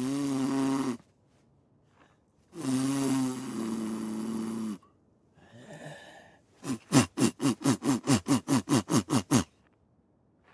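A man's wordless comic vocal sounds: a short hummed grunt, a longer two-pitched hum, a breathy puff, then a quick run of about a dozen short falling vocal bursts, roughly four a second, that sounds like snoring.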